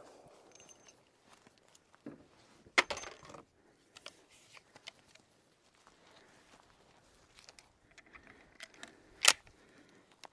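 Faint metallic rattles and clicks from handling, with two short sharp clacks, one about three seconds in and a louder one about nine seconds in.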